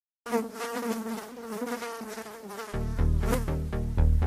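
A fly buzzing close up, its wavering drone starting just after the opening. About two-thirds through, deep rhythmic bass pulses come in under it and get louder.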